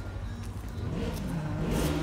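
A motor vehicle's engine, growing louder over the second half as if drawing nearer, over a steady low rumble.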